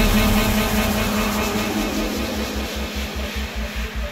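Hardstyle remix track: a loud rushing noise sweep dies away, and about two and a half seconds in a fast pulsing low bass-and-kick beat comes in.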